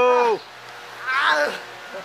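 A man's drawn-out wordless vocal cry right at the start, its pitch rising and then falling. A shorter, higher cry with falling pitch follows about a second later.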